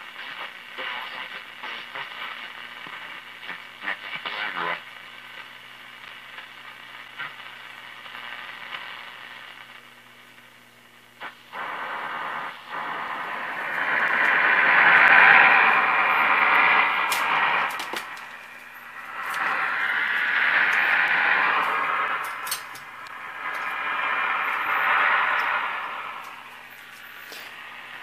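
1937 Philco 37-640 radio tuned across the shortwave band, its unmounted field-coil speaker giving out static and hiss over a steady low hum. The noise dips about a third of the way in, then swells loudly three times as signals drift in and out under the dial.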